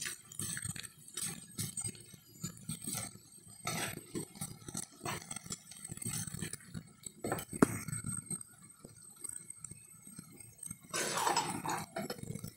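Spatula stirring and turning rice noodles and vegetables in a pan, with irregular scrapes and soft clinks against the pan and one sharper clink a bit past halfway.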